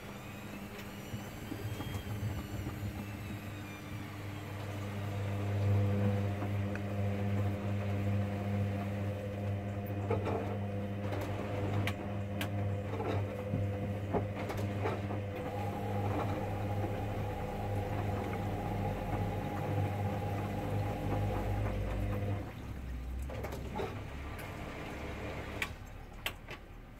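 Hoover Dynamic Next washing machine's drum motor turning the drum in one direction during the wash: a steady hum with a brief rising-then-falling whine as the motor starts. Scattered clicks and knocks come from the laundry tumbling in the drum, and the motor stops about 22 seconds in.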